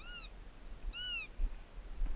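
Two short, high whining calls from an animal, one right at the start and one about a second in, each rising and then falling in pitch.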